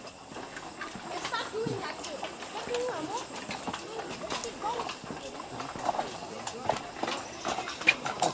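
Footsteps knocking irregularly on the wooden plank floor of a rope suspension walkway as people cross in single file, with other people's voices in the background.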